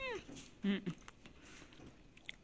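A woman's appreciative 'mm' sounds while eating: a short one sliding quickly down in pitch at the start, then a brief lower hum.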